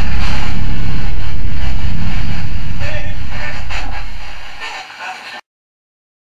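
Loud hissing static over a deep rumble, with quick clicks and brief snatches of voices, typical of a spirit box sweeping through radio stations. It fades away about four seconds in and cuts off to silence shortly before the end.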